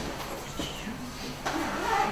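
Faint murmured voices over low room noise.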